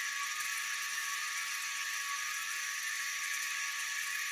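Steady high-pitched hiss with nothing in the low end, even and unchanging throughout.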